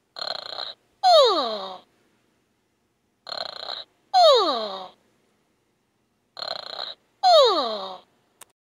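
Playskool Storytime Gloworm toy playing its recorded cartoon snoring through its small speaker, its going-to-sleep sound. Three snores about three seconds apart, each a short rasping intake followed by a whistle that falls in pitch.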